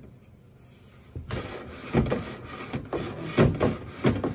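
A cable being pushed along between a car's headliner and the roof, rubbing and scraping against the trim in a series of strokes. It starts about a second in, with the loudest scrapes near the middle and again shortly before the end.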